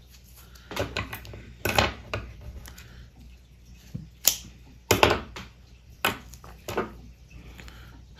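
Fly-tying scissors snipping and clicking while a pinch of black bucktail is cut and handled at the vise: a series of short, sharp clicks at irregular intervals.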